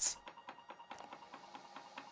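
Small stepper motor stepping faintly, a regular run of quick ticks with a weak steady tone.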